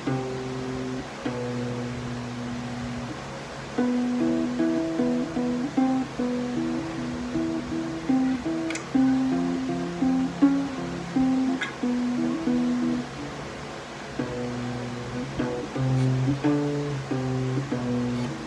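Acoustic guitar in standard tuning picking a slow riff of single low notes on the low E string, moving between the 7th and 10th frets, in repeating phrases. A few sharp string clicks stand out partway through.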